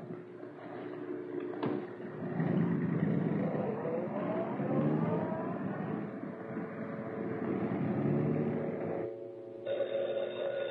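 A click, then a car engine running and pulling away, its pitch rising as it speeds up and then holding steady for several seconds.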